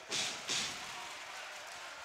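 Basketball arena ambience during live play: a steady low crowd and hall noise, with two short hissy bursts in the first second.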